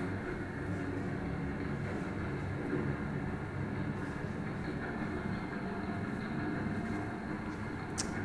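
Underwater recording of ship traffic noise, the kind whales hear constantly, played over loudspeakers in a room: a steady low rumble with a faint steady hum.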